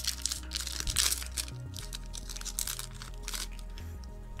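Foil Yu-Gi-Oh booster pack wrapper crinkling and crackling as it is torn open by hand, over background music.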